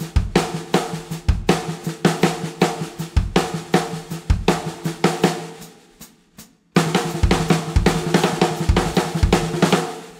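Snare drum and kick drum playing a repeating right-left-right-left-left-kick sticking: a run of snare strokes closed by one bass drum hit, the kicks about once a second. It dies away about six seconds in, then starts again faster, with kicks about twice a second.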